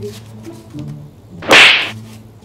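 One sharp slap of a hand on a full-face motorcycle helmet, about one and a half seconds in.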